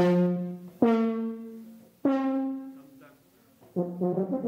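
Tuba played loudly in its upper register: hard-attacked notes that each die away, stepping up in pitch, then a short pause and a new phrase starting near the end. It is the hard, loud blowing in the top register that a player has to practise for a demanding solo part.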